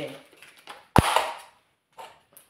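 A single loud, sharp knock about a second in, with a short noisy scuffle after it, then the sound cuts out to dead silence.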